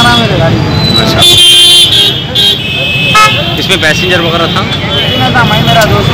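A vehicle horn sounds briefly, one steady blast about a second and a half in, over men's voices and the low hum of street traffic.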